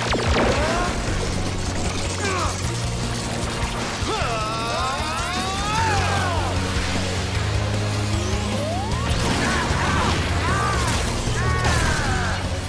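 Action-score music with a steady bass, layered with energy-attack sound effects: a sharp crash right at the start, then repeated swooping zaps and whooshes as the blasts fly.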